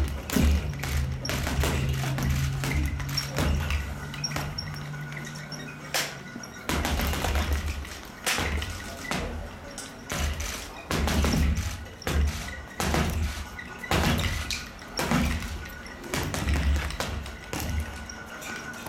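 Boxing gloves punching a double-end bag in fast flurries of sharp hits, with short pauses between the flurries. Music plays in the background.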